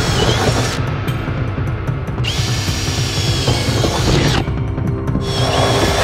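Cordless drill with a cobalt bit boring holes through a car's sheet-metal deck lid, one after another. The motor whines in runs of one to two seconds, with brief stops between holes.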